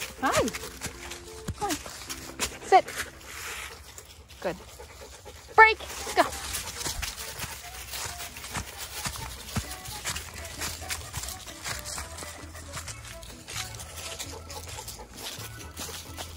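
Dogs running through dry fallen leaves, the leaves rustling and crackling under their feet, with a few short high-pitched calls in the first six seconds, the loudest about five and a half seconds in.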